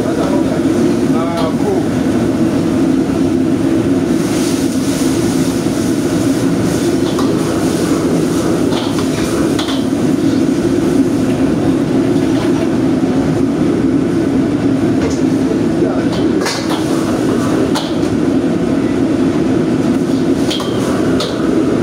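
Restaurant gas wok burner running at full flame under a wok, a loud steady rushing noise, with a metal ladle knocking and scraping against the wok a few times.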